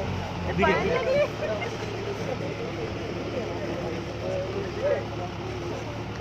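Vehicle engine idling steadily under people's voices, with one exclaimed word about half a second in and quieter talk after.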